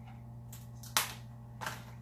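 A few sharp clicks of a plastic Blu-ray case and its wrapping being handled with a pen, the loudest about halfway through, over a steady low hum.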